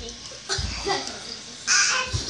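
A child's short, harsh, squawk-like shout near the end, with a few dull low knocks about half a second in.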